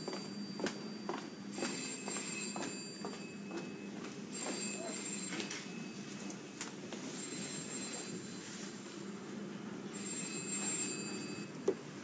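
A telephone bell ringing in the background in separate rings, each a second or two long and about three seconds apart, four times. Footsteps and a few small knocks sound between the rings.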